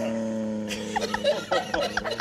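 A steady low pitched tone held for about a second, then a man laughing in short chuckles.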